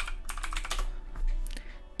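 Computer keyboard typing: a quick run of key clicks as a short chat message is typed.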